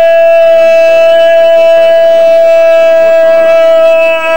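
Public-address system feedback: a loud, steady, high-pitched howl held on one unchanging note, with faint voices beneath it.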